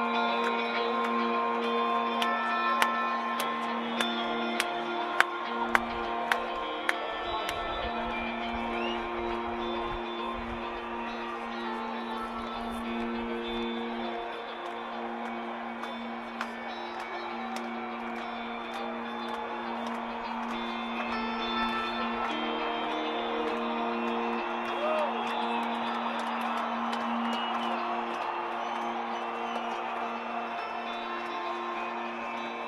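Electric guitar played alone through a stadium PA, holding long sustained notes that shift slowly, heard from within the crowd. There are a few sharp clicks a few seconds in.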